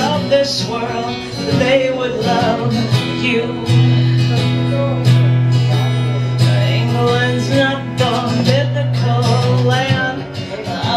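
Acoustic guitar strummed live with a woman singing along.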